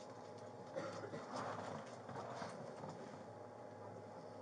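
Faint irregular clicks and rustling for about two seconds, starting about a second in, over a steady low electrical hum.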